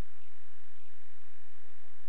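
A steady low electrical hum with a hiss over it, the noise floor of a security camera's microphone, with faint room sounds and no speech.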